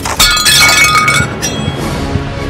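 Glass shattering with a sudden crash, then shards tinkling and ringing for about a second, over background music.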